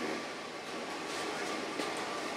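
Steady, even hum of a ship's running machinery heard inside a cabin.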